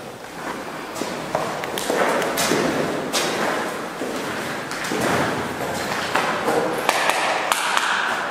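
Footsteps and shuffling on a concrete floor, with scattered knocks and taps.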